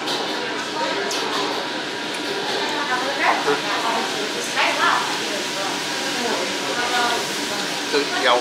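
Restaurant dining-room noise: a steady hubbub of room sound and voices, with a few short spoken phrases, one of them "好吃" ("tasty").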